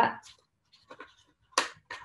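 Plastic packaging being handled and pressed by hand, with faint small sounds and then two short sharp clicks near the end.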